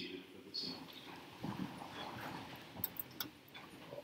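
A congregation sitting down in wooden pews: low shuffling and rustling with scattered soft knocks, and a few sharp clicks about three seconds in.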